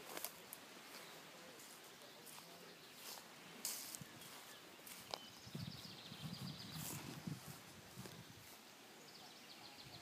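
Quiet outdoor ambience: scattered clicks and rustles from a handheld camera being carried while walking, with rustling around two-thirds of the way through. A faint, fast, high trill is heard twice in the background.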